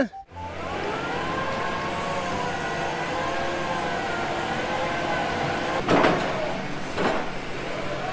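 Rotary bored-pile drilling rig running: a steady machine drone with a wavering whine. Two short noisy bursts come about six and seven seconds in.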